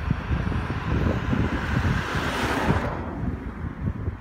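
Wind buffeting the microphone with a steady low rumble, while a car passes close by, its tyre and engine noise swelling to a peak about two and a half seconds in and then quickly fading.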